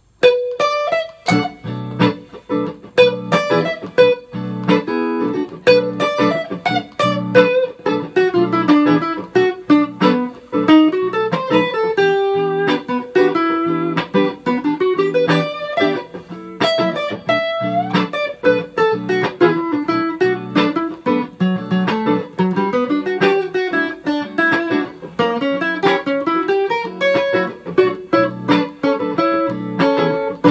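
Electric guitar, a hardtail Stratocaster through a Fender Hot Rod Deluxe tube amp, playing a fast single-note minor blues solo of jazzy arpeggio and diminished lines. Underneath runs a looped guitar chord backing that comes in about a second in.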